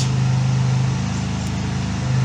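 A steady low machine hum, even in pitch and level throughout.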